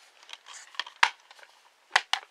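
Hands handling a plastic Blu-ray disc case and a small paper pamphlet: light rustling with a few sharp clicks, the loudest about a second in and another near the end.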